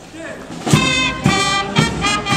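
A marching band strikes up about two-thirds of a second in: brass playing a tune over drum beats that fall roughly twice a second.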